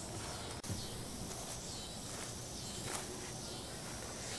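Quiet, steady outdoor background noise with no distinct events.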